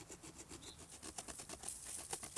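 A rough-edged basalt stone sawing back and forth across a peeled hemlock stick, cutting a groove around it. The stone scratches faintly on the wood in quick, even strokes, several a second.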